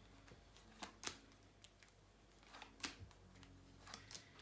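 Near silence with faint background music and a few soft clicks from tarot cards being handled: two clicks about a second in and two more near the three-second mark.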